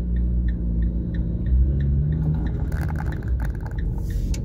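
Car engine running, heard from inside the cabin, its note rising as the car pulls away. Over it the turn-signal indicator ticks steadily, about three ticks a second.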